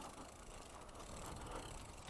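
Faint, rapid ticking of an e-bike's rear freewheel ratchet as the bike coasts, over low rolling noise.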